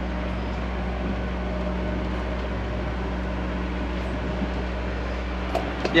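Sailboat's inboard engine running steadily while motoring, a low even hum heard from inside the cabin.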